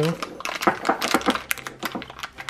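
Clear plastic bag crinkling as it is pulled out of a glass mason jar, a quick run of short crackles and light clicks against the glass.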